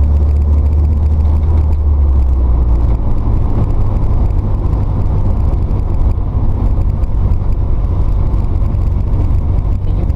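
Engine and road noise heard inside the cabin of a moving van: a loud, steady deep drone, whose low engine hum changes about three seconds in.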